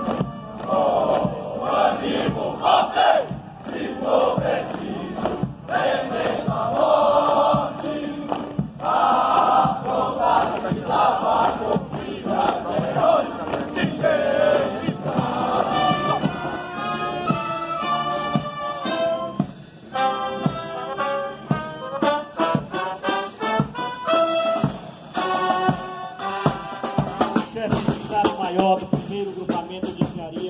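A troop of soldiers singing a military marching song together in unison as they march. About halfway through this gives way to a military brass band playing a march, with held, steady notes.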